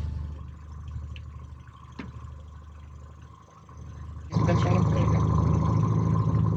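A faint low hum with a single click, then a little over four seconds in the boat's outboard motor is heard running steadily at slow trolling speed.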